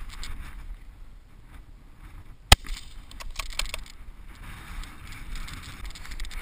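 Low rumble of wind on the microphone with rustling movement noise, broken by one sharp crack about two and a half seconds in and a quick run of clicks about a second later.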